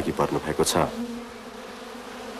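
Honeybees buzzing in a steady, even drone from a hive frame crowded with bees.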